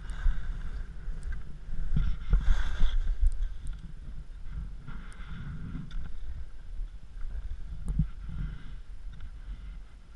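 Skis scraping over snow through a series of turns, with wind rumbling on the camera microphone. The loudest scrape comes about two seconds in, and the sound is quieter through the second half.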